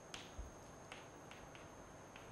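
Faint taps and scratches of chalk on a blackboard as words are written, a handful of small clicks.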